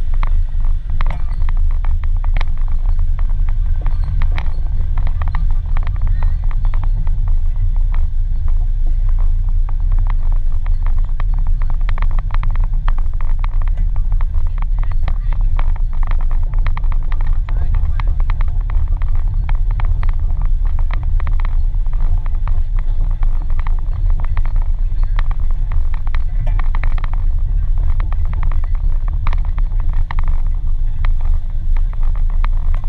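Steady low rumble of a small vehicle riding slowly over grass, with irregular rattling and clicking and the rush of air against the low-mounted camera's microphone.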